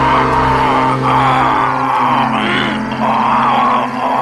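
A man grunting and straining in repeated bursts as he is strangled with a cable, over a low sustained music drone.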